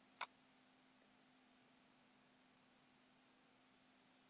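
Near silence: a faint steady electrical hum, with one short computer-mouse click a fraction of a second in.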